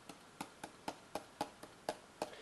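A stylus tapping on a tablet screen to place dots, a quick series of light taps about four a second.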